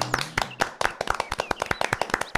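A crowd clapping, many sharp hand claps at an irregular, quick pace.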